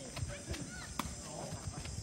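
Several sharp knocks, spaced unevenly, of a sepak takraw ball being kicked and struck during play, with faint voices in the background.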